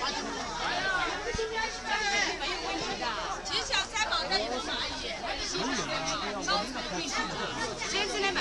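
Several people talking over one another: steady chatter of voices throughout.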